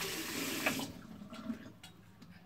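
Bathroom tap running briefly, for just under a second, then shut off, followed by a few faint knocks.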